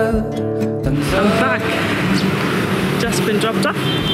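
A background song with acoustic guitar cuts off about a second in. Then comes street noise with traffic and brief snatches of voices.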